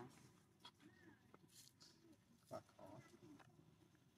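Near silence with faint, scattered squeaks from young macaques and a few soft clicks, the loudest brief sound about two and a half seconds in.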